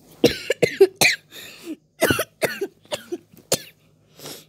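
A person coughing in a rapid fit of about ten short, harsh coughs.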